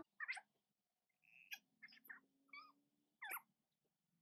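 Near silence, with about five faint, brief chirping calls that bend in pitch, scattered through it.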